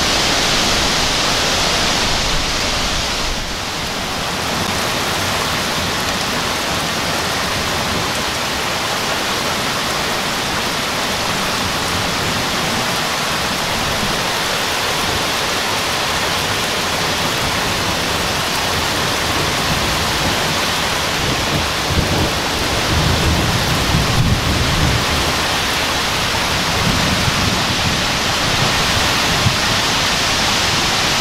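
Thunderstorm downburst: heavy rain and strong wind through trees, a loud, steady rushing noise. Low rumbling comes in about two-thirds of the way through.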